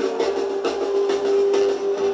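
Mexican banda playing live, heard through a phone microphone: the brass holds one long note over a steady beat of tambora drum strokes and sousaphone bass pulses.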